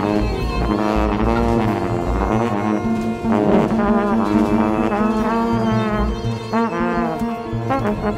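Small jazz ensemble playing: wind instruments in bending, sliding lines over a held low note and a pulsing bass.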